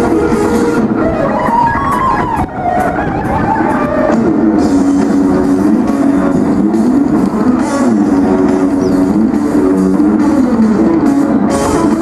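Electric guitar played solo through an amplifier: a melodic line for the first few seconds, then fast rising-and-falling runs that repeat from about four seconds in.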